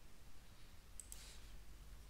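A single faint computer-mouse click about a second in, over a steady low hum.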